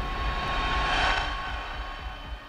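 Dramatic background music: a swell of noise like a rushing drone builds over sustained tones, peaks about halfway through, then fades.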